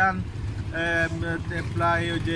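A man talking over a steady low rumble of street traffic.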